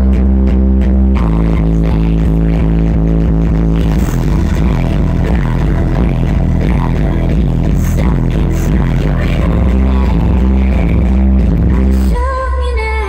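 Loud electronic music with heavy, sustained bass played on a car audio system during a sound demo, heard from inside the car's cabin. The bass line shifts about a second in and again around four seconds in.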